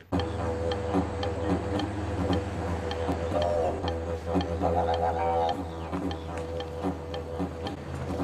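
Didgeridoo playing a steady low drone over a beat of sharp ticks, with a few brief higher wails near the middle: stereotypically Australian soundtrack music.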